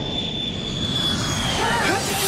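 Jet airliner engines running in flight: a steady rushing noise with a high whine that dips slightly near the end, as a voice starts over it.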